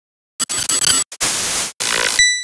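TV-static hiss from a logo glitch effect: after a short silence it comes in as loud choppy bursts, cut by brief dropouts.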